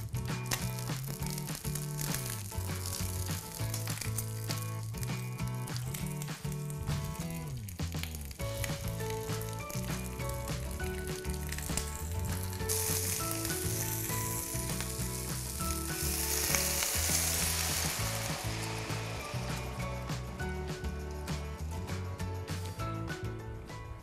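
Whole chicken frying in hot olive oil in a cast-iron casserole, a steady sizzle that grows louder and hissier for several seconds from about halfway in, as cherries go into the hot pan. Background music plays underneath.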